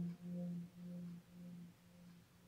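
A vibraphone's final chord ringing out and dying away. A low note with fainter upper notes pulses in volume about twice a second from the instrument's motor-driven vibrato and fades steadily to near nothing by the end.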